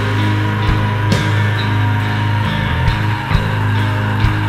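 Instrumental heavy progressive rock: a sustained low bass note under distorted held chords, with a few sharp drum hits.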